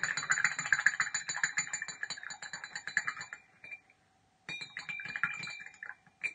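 A paintbrush being rinsed in a water pot, its handle rattling against the inside of the pot in a fast run of clicks with a faint ring. The clicking stops for about a second after three and a half seconds, then comes back in a shorter run.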